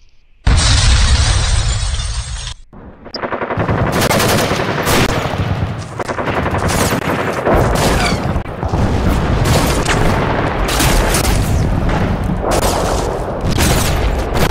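Battle sound effects: a loud burst of noise about half a second in, then from about three and a half seconds a long barrage of rapid gunfire, with shots coming thick and fast.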